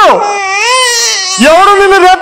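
A performer crying theatrically in a comedy skit: a short falling cry, then a long high-pitched wail that wavers up and down, breaking into talk near the end.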